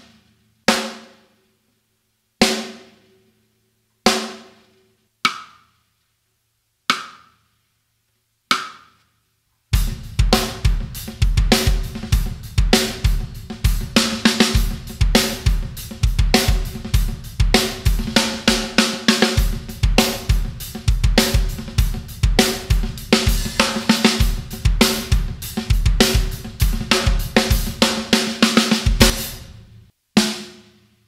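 Sonor Signature 14x8-inch beech-shell snare drum tuned high: six single strokes about a second and a half apart, each ringing out. Then, about ten seconds in, a full drum-kit groove of bass drum, hi-hat and this snare runs until about a second before the end.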